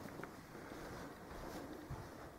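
Faint room tone with the rumble of a handheld camcorder being moved and panned. There is a small click a quarter second in and one soft, low thump near the end.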